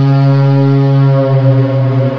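Background music: a single low held synth note, steady and rich in overtones, with a slight waver in level near the end.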